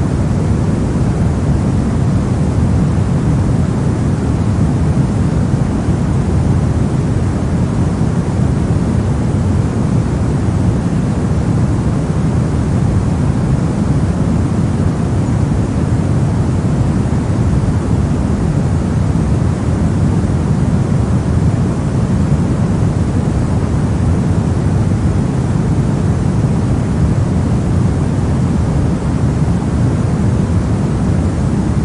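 Steady pink noise: an even, unchanging rushing hiss weighted toward the low end.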